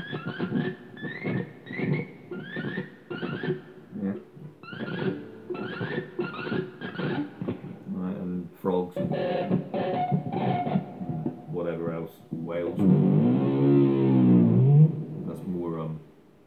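Electric guitar played through a Yamaha THR10 amp with effects on: short repeated notes with quick upward slides, then held notes. Near the end comes the loudest part, a long note whose pitch swoops up and down with the tremolo bar.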